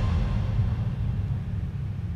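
Low, bass-heavy rumble of outro music fading out.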